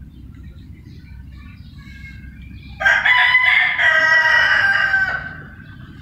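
A rooster crowing: one loud call starting about three seconds in and lasting about two and a half seconds. Before it come a few faint clucks and chirps from the flock, over a steady low rumble.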